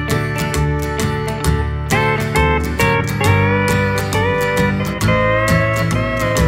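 Instrumental break in a Bakersfield-style country song: a lead guitar plays a melody with sliding notes over bass, rhythm guitar and a steady drum beat, with no vocals.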